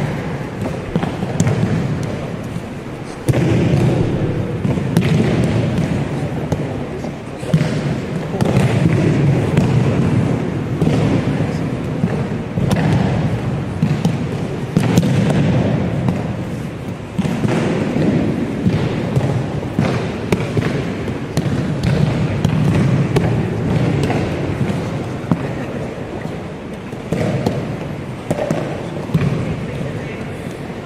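Aikido practice on mats: many pairs pinning and throwing, with scattered thuds and slaps of bodies and hands on the mats over a continuous murmur of voices in a large gym hall.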